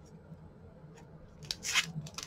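Trading cards and foil booster-pack wrappers being handled: quiet at first, then a short papery rustle of cards sliding and wrappers shifting about one and a half seconds in.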